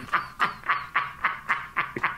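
A person laughing under their breath: a run of short, breathy pulses, about four a second.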